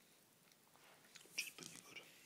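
Faint handling noise of a padded camera bag being opened: a few soft clicks and rustles starting about a second in, against near silence.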